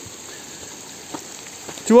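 Small stream of water trickling over rocks: a steady, even hiss of running water, with one light tap about a second in.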